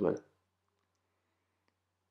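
Two faint clicks, about a second and a half in, of a watchmaker's screwdriver working a tight barrel-bridge screw on a Zenith cal. 2531 movement.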